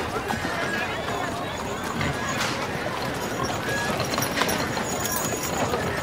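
Busy street ambience: a crowd of voices chattering, with horse hooves clip-clopping.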